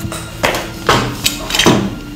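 Four sharp knocks or thuds, spaced about half a second apart, over a steady low tone.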